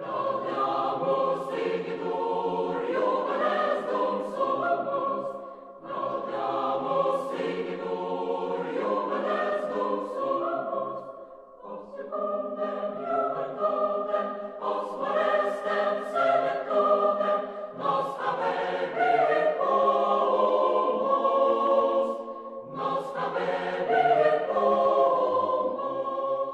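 Choir singing a slow song in sustained phrases of several seconds each, with short breaks between them.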